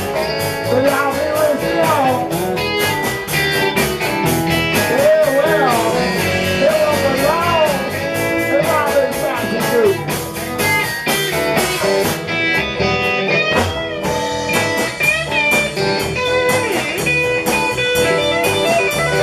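Live band playing a blues-rock instrumental break: a lead electric guitar line with bent, sliding notes over rhythm guitar and a drum kit keeping a steady cymbal beat. The cymbals drop out briefly about twelve seconds in.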